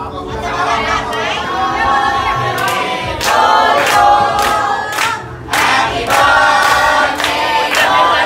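A group of party guests singing a birthday song together in front of a cake with lit candles, with hand clapping in time joining in about three seconds in and the singing growing louder.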